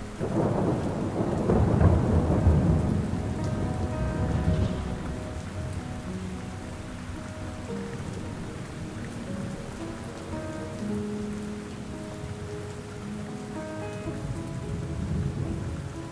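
Rain and thunderstorm ambience: a long, low rumble of thunder in the first three seconds or so that slowly dies away, then steady rain, with soft held tones underneath.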